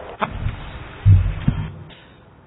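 A sharp click followed by a few dull low thumps on a microphone, loudest a little past a second in, like the handling noise of a microphone being touched or adjusted on its stand.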